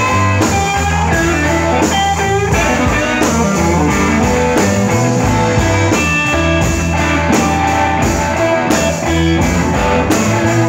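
Live blues-rock band playing an instrumental passage: electric guitars, one of them a handmade Tramsmash guitar, over a steady bass line and drum kit with regular cymbal strokes.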